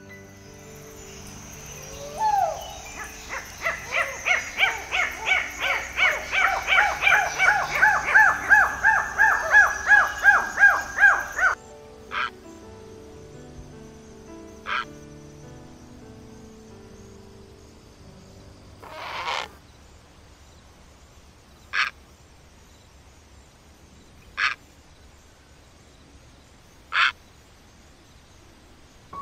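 A rapid series of ring-tailed lemur calls, about two to three a second, growing louder and then cutting off suddenly. After that come a few short, separate calls several seconds apart, with soft background music throughout.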